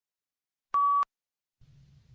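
A single short electronic beep, one steady mid-pitched tone lasting about a third of a second, sounds about a second in. It serves as a cue tone marking the start of the next read-aloud item.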